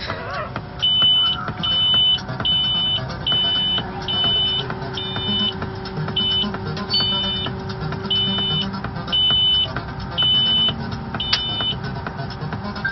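A combine harvester's cab warning beeper sounding a high-pitched beep about once a second, about a dozen times, over the steady running of the combine's engine.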